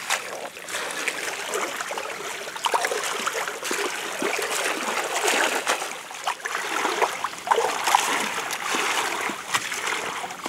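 Shallow stream water splashing and sloshing in irregular small splashes as a woven basket fish trap is worked and lifted through it.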